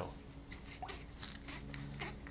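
A plastic quart bottle of motor oil being handled and its cap twisted open: several faint, short plastic clicks and crinkles.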